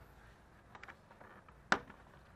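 Quiet, with a few faint clicks a little under a second in and one sharp snap near the end: a plastic door-panel retainer clip popping loose as the door trim panel is pulled off by hand.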